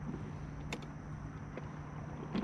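Quiet outdoor background: a steady low hum with a faint high tone above it, and a few light clicks.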